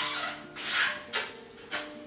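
A small dog in its pet bed making about four short, breathy vocal sounds as a person handles it, the loudest near the middle, over steady background music.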